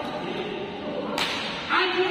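Badminton racket striking a shuttlecock hard, a sharp crack about a second in, then a louder, longer sound near the end, over the murmur of a busy badminton hall.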